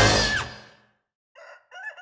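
Orchestral cartoon theme music ends with a falling slide in the first half-second. After a moment of silence, a rooster crows faintly near the end as a sunrise-on-the-farm sound effect.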